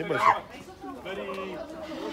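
Indistinct voices of people talking, with some drawn-out vocal sounds and no clear words.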